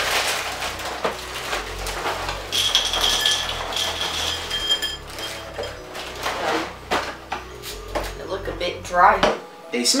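Crinkling and tearing of a cereal box's plastic liner and a cardboard box being opened, then Pop-Tarts cereal poured into a bowl, the dry pieces rattling against it.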